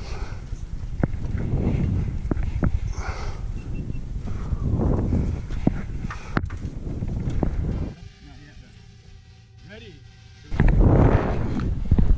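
Wind rushing over the microphone as a large steel-pipe swing arcs back and forth, with a few sharp knocks from the frame in the first few seconds. About two-thirds of the way through the rush drops away for a couple of seconds, leaving only faint tones and a brief squeak, then comes back loudly as the swing speeds up again.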